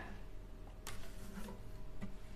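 Faint handling noise with one sharp click a little under a second in, as one acoustic guitar is set aside and another picked up.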